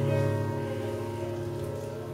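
Electric keyboard holding soft sustained chords that slowly get quieter.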